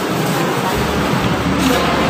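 Steady road-traffic noise, a continuous rumble and hiss of passing vehicles.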